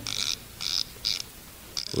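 Radio sound effect of a safe's combination dial being turned: three short bursts of ratcheting clicks, then another near the end.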